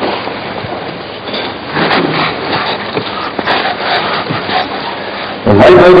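Paper rustling and crackling as Bible pages are turned at a lectern, with a man's voice starting near the end.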